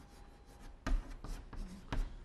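Chalk writing on a blackboard: a few short, separate strokes as Chinese characters are written, the loudest near the end.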